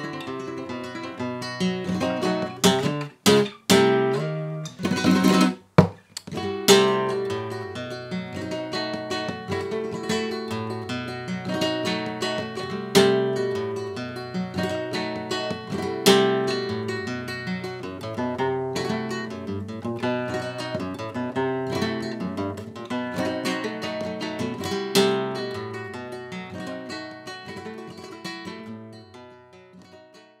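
Flamenco guitar played in a tango rhythm with a capo on the neck: strummed chords, with a run of quick, sharp strum strokes a few seconds in, then rhythmic chords and picked melody, fading out near the end.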